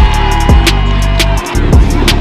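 Hip hop backing track: deep bass drum hits that fall in pitch, sharp hi-hat ticks and a held low bass line.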